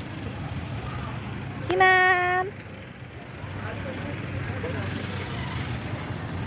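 A vehicle horn sounds once, a single steady note a little under a second long, over a steady low rumble of vehicles.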